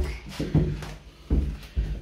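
A handful of dull, uneven knocks and thumps as a toddler clambers up and onto a plastic toddler slide.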